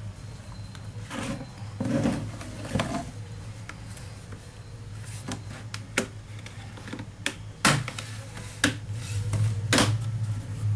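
Plastic laptop bottom case being handled and pried loose from the chassis: some scraping early, then a series of sharp clicks and knocks from about halfway on as the case's clips let go, over a steady low hum.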